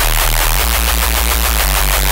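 Heavy, distorted neuro-style reese bass from a Serum synth, held as one dense, loud note with a fast pulsing low end and gritty noise on top. It is played through a FabFilter Pro-L 2 limiter that limits it and makes it a bit louder.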